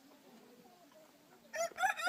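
A rooster crowing: the call starts about one and a half seconds in, after a quiet stretch, and is still going at the end.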